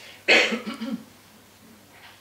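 A woman coughs hard about a third of a second in, followed by a few short rough throat-clearing sounds, all over within a second.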